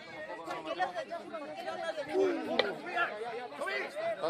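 Overlapping voices of several people talking and calling out at once, with a single sharp knock a little past halfway.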